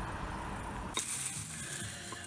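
Steady background noise with a low rumble. About a second in it cuts off abruptly to a thinner, quieter steady hiss.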